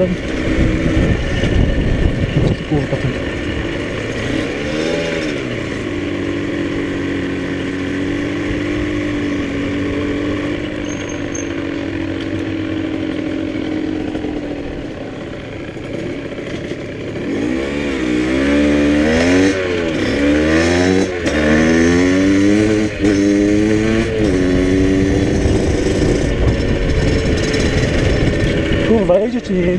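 Motorcycle engine under way, heard from the rider's seat with wind rush on the microphone. It holds a steady note for several seconds, eases off about halfway, then goes through a run of quick rises and falls in engine pitch in the second half.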